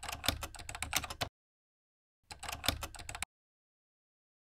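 Computer keyboard typing sound effect: two quick bursts of key clicks, each about a second long and about a second apart, as text types out on screen.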